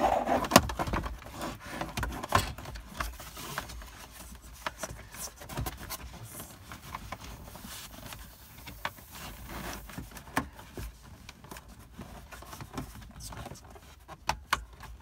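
Plastic instrument cluster of a 1999–2004 Jeep Grand Cherokee being worked back into its dash opening by hand: scattered clicks, knocks and scrapes of plastic on plastic. A few louder knocks come in the first three seconds, and a quick group of clicks near the end.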